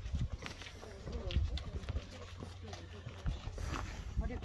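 Faint, indistinct voices in the background with scattered footsteps on pavement and a low rumble of outdoor air.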